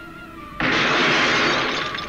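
A sudden loud shattering crash about half a second in, lasting over a second before easing off, over quiet film-trailer music.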